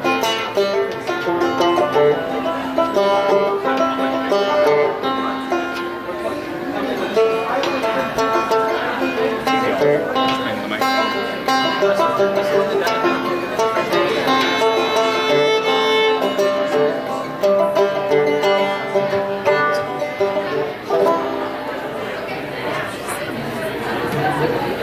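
Acoustic string band playing live: banjo, acoustic guitar and fiddle together in a bluegrass-style tune.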